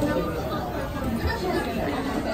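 Indistinct chatter of several people talking in a busy shop, no single voice standing out.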